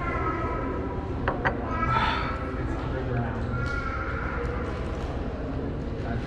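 Indistinct voices of other people in a large, echoing hall over a steady low hum, with two quick sharp clicks a little over a second in.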